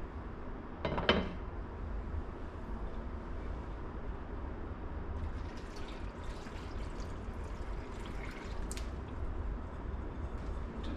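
Thin stew sauce of beef stock, water and tomato paste poured from a bowl into a slow cooker over chunks of pumpkin and beef, splashing and trickling in the second half. A single sharp clink about a second in as the slow cooker's glass lid is handled.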